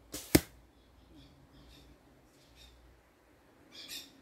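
An arrow from a traditional bow swishes in and strikes hard about a third of a second in, a single sharp hit. It misses the water-bottle-cap targets and ends up in the leaf litter beside them.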